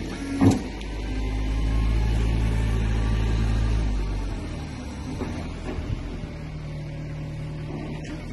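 Ravaglioli tractor tyre changer's electric motor: a click about half a second in, then a steady low hum that runs for about three seconds and fades, with a quieter hum starting again near the end.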